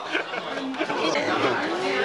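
Overlapping conversation: several people talking over one another.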